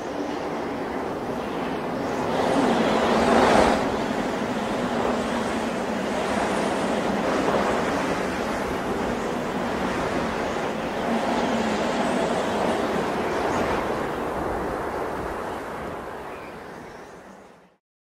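A steady wash of rushing noise, like ocean surf, with gentle surges; loudest a few seconds in, then fading out near the end.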